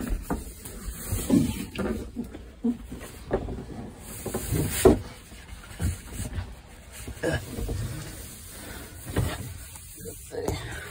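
Handling noise from a phone carried by someone on the move: irregular bumps, knocks and rustling, the loudest knock about five seconds in.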